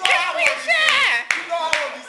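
Teenagers' loud, excited voices with sharp hand claps about every half second.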